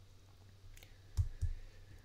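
A few faint clicks, then two short low thumps a little past a second in.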